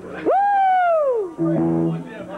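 Electric guitar note that leaps up in pitch and then slides slowly down over about a second, followed near the end by a steady, lower held note.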